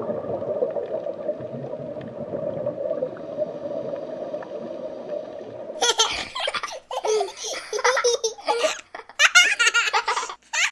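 A steady underwater water rush with faint gurgling. It cuts off about six seconds in to bursts of a child's giggling laughter.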